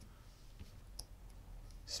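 Quiet room tone with a few faint light clicks, about one a second, from a hand handling the small circuit board and its wires.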